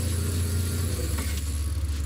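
Boat's Mercury outboard motor running at low trolling speed: a steady low hum that drops a little in pitch about a second in.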